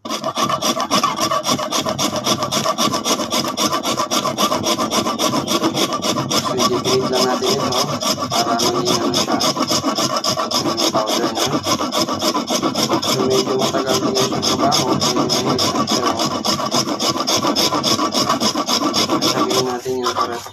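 A hard block of baked salt rubbed rapidly back and forth on a grater, a steady rasping scrape of several strokes a second as it is ground to powder. It stops just before the end.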